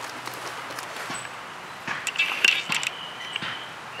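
Faint outdoor background noise, with a few light clicks and rustles from about two seconds in.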